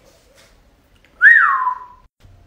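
A single whistled note starting about a second in, rising briefly and then sliding down in pitch and holding lower.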